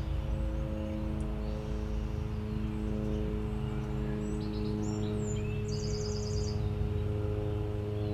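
A steady low drone of several held tones runs throughout. Over it a bird chirps, then gives a quick trill of about ten notes roughly six seconds in.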